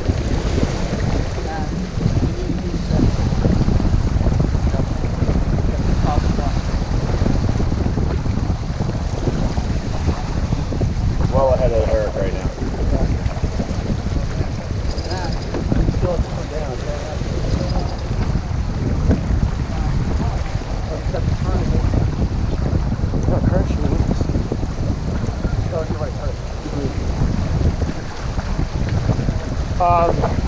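Steady wind rumble buffeting the microphone over water rushing along the hull of a sailboat under way under sail.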